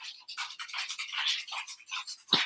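Smartphone being handled and tapped close to the microphone: a quick, irregular run of soft rustles and light taps.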